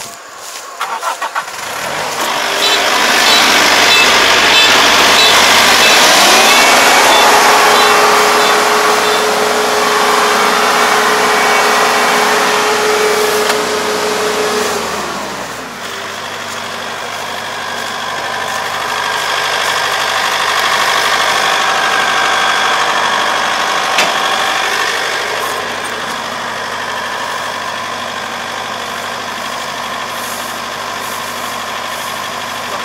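Four-row rice combine harvester's engine restarted after stalling: a brief crank, then it catches about two seconds in. It revs up to working speed, falls back to a steady idle about fifteen seconds in, and one sharp click is heard near the end.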